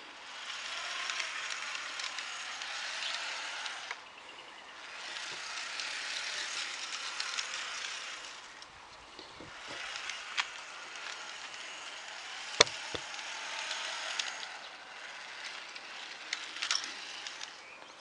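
Small homemade garden-railway locomotive on LGB wheels running along G-scale track: a rattling whir from its motor and gearing with fine clicks of the wheels over rail joints and points. The sound swells and fades as it comes and goes, with one sharp click a little past the middle.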